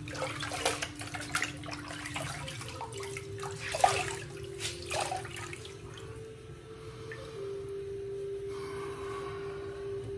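Water running and splashing at a bathroom sink for about the first six seconds, with the loudest splash about four seconds in, then quieter. Soft background music of long held notes plays underneath.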